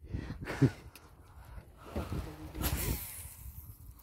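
Faint, indistinct voices over a low rumble, with a short rush of noise about three seconds in.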